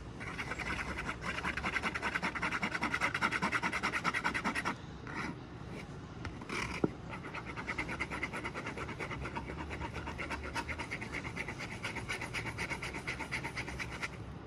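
Acrylic paint being mixed on a paper-plate palette, the mixing tool scraping the plate in rapid back-and-forth strokes as magenta and blue are worked into violet. The strokes are loudest for the first few seconds, pause briefly around the middle with a small click, then carry on more softly.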